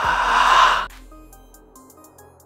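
A short breathy whoosh lasting about a second, followed by soft background music with short plucked notes that fades away.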